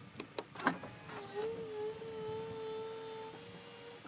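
The 2004 BMW 745Li's power trunk lid opening under its own drive: a few short clicks, then from about a second in a steady motor hum that rises briefly in pitch and then holds level as the lid lifts.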